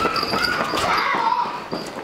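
Small children's voices chattering and calling out, with short high cries among them.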